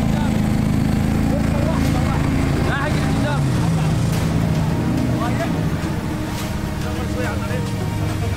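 ATV engine running at low speed as it tows a jet ski on a wheeled trailer across sand, a steady low drone.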